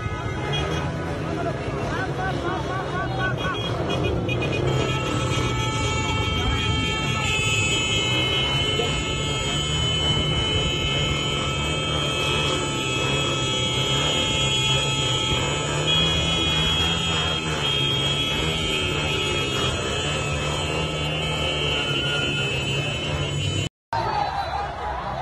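Motorcade of motorcycles and cars crawling through a crowd: engines running, horns held, crowd voices, with music playing.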